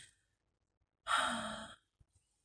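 A person's sigh: a single breathy exhale with a little voice in it, about a second in and lasting under a second.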